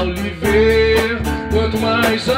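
Live rock power trio playing an instrumental passage: electric guitar holding a note over bass guitar and a steady drum beat.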